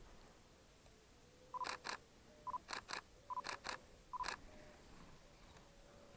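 Nikon DSLR taking a burst of photos: four short autofocus-confirmation beeps, each followed by one or two quick shutter clicks, in about three seconds.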